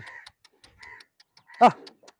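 Birds chirping, with quick clicking notes repeating about four or five times a second, and one short loud call falling in pitch about one and a half seconds in.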